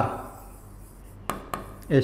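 Two sharp taps of a pen on an interactive board's screen, about a quarter second apart, a little over a second in, as writing starts.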